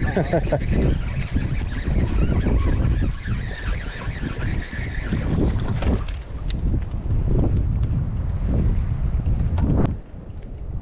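Wind buffeting the microphone, with a man laughing about a second in and scattered light clicks throughout.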